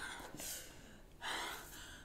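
A person breathing hard: two gasping breaths, a short one and then a longer one about a second in.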